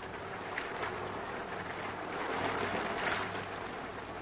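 Radio-drama sound effect of rain falling, a steady hiss that swells a little about three seconds in.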